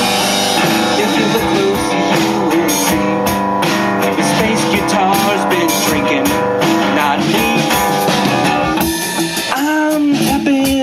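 Live rock band playing: amplified acoustic bass guitar with a drum kit and cymbals.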